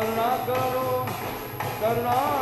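Devotional kirtan song sung to keyboard accompaniment, the melody gliding and bending, with percussion beats about every half second.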